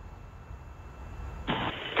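A low, steady rumble, joined about one and a half seconds in by a short burst of radio-loop static just before a voice call.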